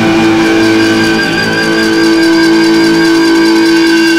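Heavy rock music holding one long sustained note, with a slight vibrato in its upper tones.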